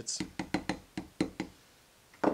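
A small ball-peen hammer tapping a steel ball bearing into the bronze housing of a Jabsco raw water pump: about seven light, quick taps in the first second and a half, then they stop. The bearing is being tapped gently to start it in square so it won't go in sideways.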